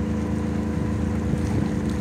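A sailboat's engine running at a steady, even hum while under way, with wind and water rushing past.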